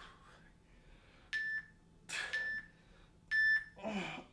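Phone interval-timer app beeping three times, about a second apart, counting down the last seconds of a work interval. Between the beeps a man is breathing hard through a crunch exercise, and he lets out a short "oh" at the end.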